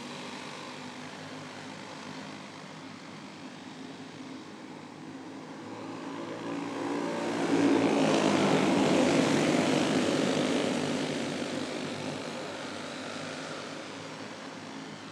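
A field of champ karts (caged dirt-track racing karts) running flat out together, their engines blending into one drone. The sound swells as the pack passes close about halfway through, then fades as it moves away around the oval.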